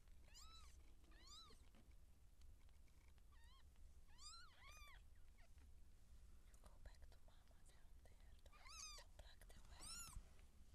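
Newborn Siamese kittens mewing: faint, short, high-pitched cries, each rising and falling in pitch, about six of them, bunched in the first five seconds and again near the end.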